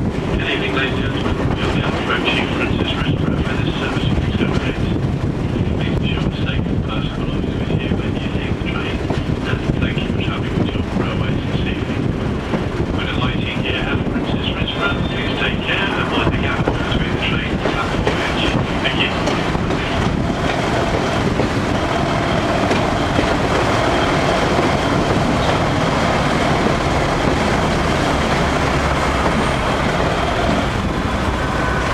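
British Rail Class 121 "bubble car" diesel railcar running along the line, heard from an open window onboard: diesel engine, wheels on the rails and rushing air. A steady whine joins the running noise about two-thirds of the way through.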